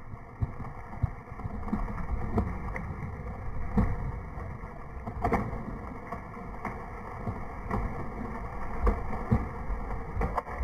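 Hinge wood of a large felled tree cracking and popping in irregular sharp snaps as the trunk begins to tip over its stump, over a steady low rumble.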